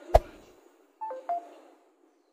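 Sound effects for an on-screen like-button animation: a sharp click, then about a second later two short electronic beeps.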